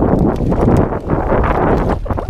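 Mountain bike riding over trail: tyres rumbling on the dirt and the bike clattering with quick irregular knocks, with wind buffeting the camera microphone.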